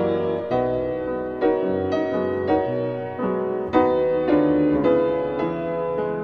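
Background piano music: gentle, sustained notes struck about twice a second.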